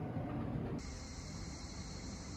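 A low, even hum of a large indoor hall, which cuts off abruptly under a second in. In its place comes quiet outdoor ambience with a steady, high-pitched insect drone.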